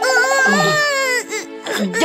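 A child's voice-acted crying: one long, loud, high wail lasting a little over a second, then a short sob, with background music underneath.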